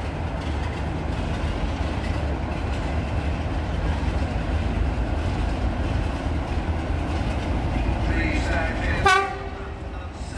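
Class 33 diesel locomotive running with a steady low engine rumble as it draws slowly into the platform. About nine seconds in it sounds its horn once, a sudden loud blast of under a second.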